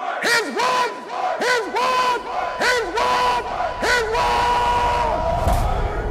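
A group of voices chanting in unison, short shouted phrases in a steady rhythm, the last syllable held longer, with a deep boom swelling near the end.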